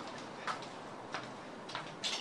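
Three faint, short clicks, evenly spaced a little over half a second apart, over a low steady background hiss.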